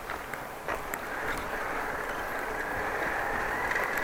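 Bicycle riding along a wet street: a steady rolling hiss of tyres on the road, with a few small clicks and rattles and a faint high steady tone coming in over the second half.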